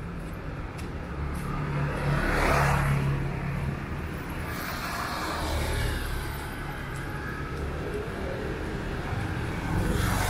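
Street traffic: motor vehicles passing close over a steady engine hum, loudest about two and a half seconds in, again around six seconds, and near the end.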